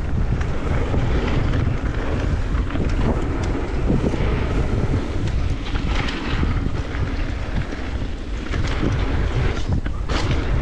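Wind buffeting the microphone of a handlebar camera on a mountain bike descending a dirt flow trail, over the rumble of tyres rolling on hardpacked dirt. Scattered short rattles and clicks from the bike come through.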